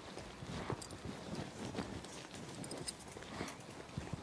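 Footsteps of a man walking on a paved courtyard, a run of hard shoe strikes a few a second over faint background hiss.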